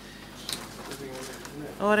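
Faint background talk and room noise at a council meeting, with a short click about half a second in, then a man says a single word near the end.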